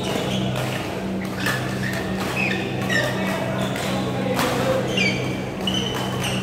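Badminton rally in a large hall: sharp racket strikes on shuttlecocks and short squeaks of court shoes on the court mats, under a low hum that comes and goes.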